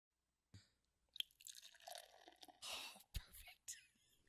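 Near silence broken by a few faint clicks and soft rustling or breathy noises.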